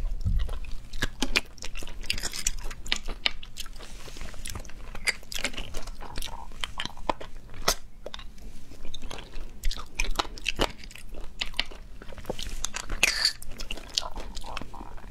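Someone eating sea snails from the shell: wet sucking to draw the meat out, with many sharp clicks and smacks of lips and teeth on the shells and chewing. There are two longer, hissing sucks, about two seconds in and near the end.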